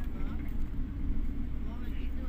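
Steady low rumble of engine and road noise heard from inside a moving vehicle, with faint voices talking.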